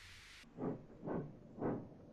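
Steam locomotive chuffing slowly as it pulls away, about two puffs a second, after a hiss of steam that cuts off half a second in.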